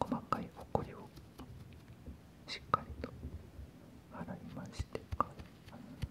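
A man whispering close to the microphone, with scattered small clicks and taps as a penlight and bamboo pick are handled near it.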